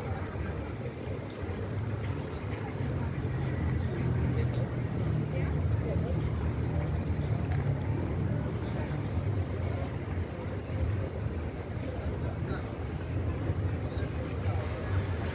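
Outdoor city ambience: a steady low rumble, swelling in the middle, under the voices of passers-by.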